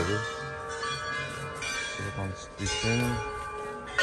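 Several temple bells ringing at once, their tones overlapping and lingering, with a voice speaking briefly near the middle.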